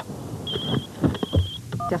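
A phone ringing: two short bursts of a high, warbling electronic ring, with a few soft knocks and thumps around them.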